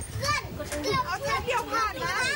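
Several high-pitched voices talking over one another, a young child's among them.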